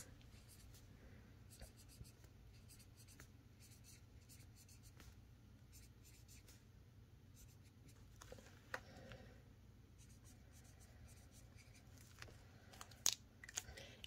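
Faint scratching of a felt-tip marker writing on a paper envelope, with a few light ticks and taps in between.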